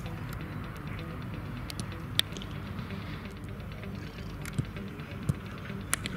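Several sharp cracks of a wooden hurley striking a sliotar, the loudest about two seconds in, over a low steady rumble.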